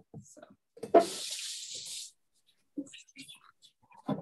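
Kitchen faucet running into a stainless steel sink as hands are rinsed: the water starts suddenly about a second in and runs as a steady hiss for about a second, followed by a few faint knocks.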